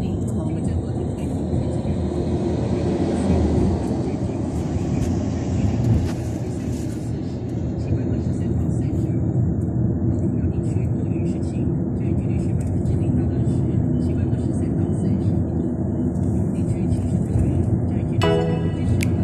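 Steady low road and engine noise heard from inside a moving vehicle.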